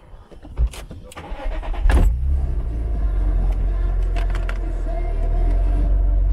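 Open roadster's engine started: a few knocks and clicks as the driver gets into the seat, a brief crank, the engine catching about two seconds in, then idling with a steady low rumble.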